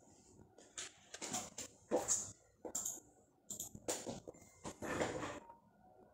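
A run of irregular rustling and scraping noises, about half a dozen over four seconds: a person moving about by an office chair and desk.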